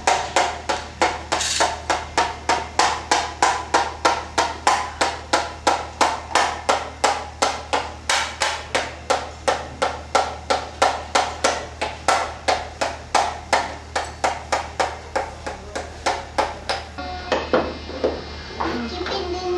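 A hand-held plastic toy clicking in an even, rapid beat, about three clicks a second, each with a short ringing tone; the clicking stops about a second before the end.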